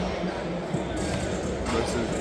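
Gym background noise: basketballs bouncing on the court, with a couple of sharp knocks about a second in and near the end, over a steady hum of the hall and faint distant voices.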